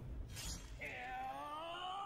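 Anime film soundtrack: a sharp crash about half a second in, followed by a long held shout that rises slowly in pitch.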